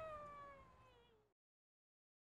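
Young Labrador retriever puppy giving one long, faint whine that slides down in pitch and fades, cut off about a second and a quarter in.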